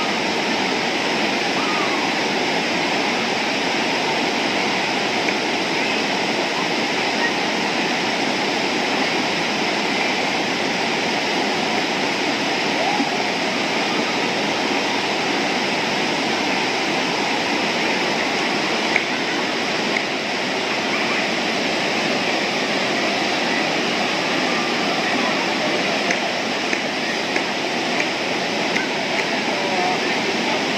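Steady rush of river rapids pouring over rocks close by: a constant, even wall of water noise with a few faint brief clicks over it.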